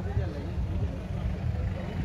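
Faint background voices over a steady low rumble.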